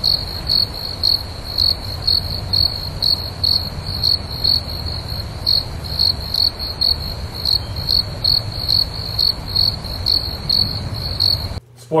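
Crickets sound effect: a cricket chirping at an even pace, about two and a half chirps a second, over a low rumble. It starts and stops abruptly.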